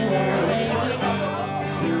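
Live guitar accompaniment to a country-folk song, its chords ringing on while the female singer rests between lines; her voice comes back in near the end.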